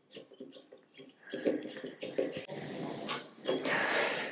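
Light metallic clicks and scraping from a folding hex key tool turning the set screw on a compound bow's arrow rest, then being handled.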